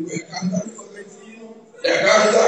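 A man's voice through a microphone and PA system: short, broken utterances, then a sudden much louder burst of voice just before the end.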